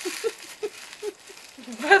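Soft, short bursts of laughter repeating for about a second and a half, then a woman starts talking near the end.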